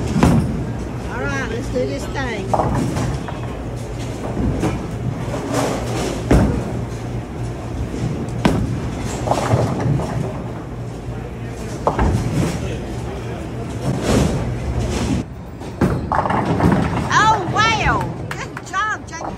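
Bowling alley noise: a bowling ball rolling down the lane and clattering into the pins, among knocks and pin crashes from other lanes, over a steady low hum and background voices.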